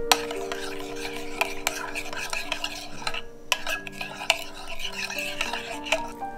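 A metal fork whisking a thin soy-sauce and oil marinade in a glass bowl: continuous swishing and scraping, with several sharp clinks of the fork against the glass and a brief pause a little past halfway.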